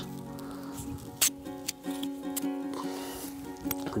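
Background music with long held notes. Over it come a few short, sharp clicks, the loudest about a second in, as a raw potato is cut in two.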